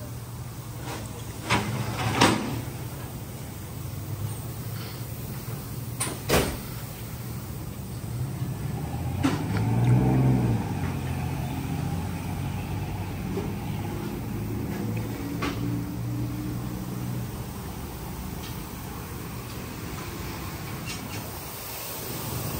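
Workshop background: a low mechanical hum that swells about ten seconds in and then settles, with a few sharp clicks and knocks scattered through it.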